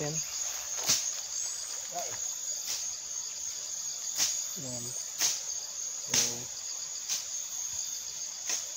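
Steady, high-pitched insect chorus, pulsing slightly, with several sharp clicks at irregular intervals.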